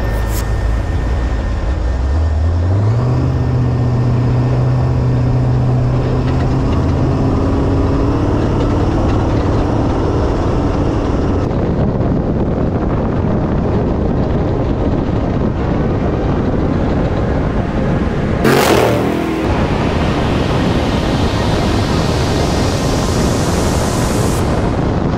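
Off-road Trophy Bug race truck driving fast over a desert dirt track: the engine note climbs over the first few seconds as it pulls away, then holds under heavy wind and rough-ground noise. A brief loud rush comes about eighteen seconds in.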